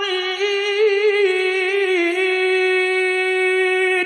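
A single unaccompanied voice reciting the Quran in melodic tilawah style, holding long ornamented notes and stepping down in pitch about two seconds in.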